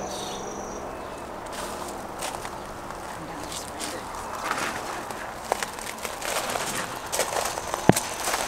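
Footsteps crunching on pea gravel, irregular and getting busier after the first second or so, over a steady outdoor hiss, with one sharp tap just before the end.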